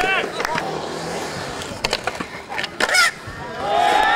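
Skateboard urethane wheels rolling on a concrete skatepark surface, with sharp clacks of the board on the concrete about two seconds and three seconds in. Onlookers' voices call out at the start and again around three seconds in.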